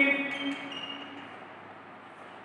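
Chalk writing faintly on a blackboard, with a short high squeak about a second in, after a man's spoken word trails off in the first half second.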